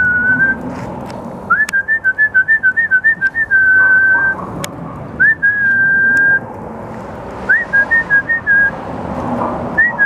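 A person whistling to call a dog: a series of whistled notes at about one pitch, each sliding up into a held tone. Some of the notes break into a quick warble, in four bouts: at the start, from about one and a half seconds in, about five seconds in, and again near seven and a half seconds.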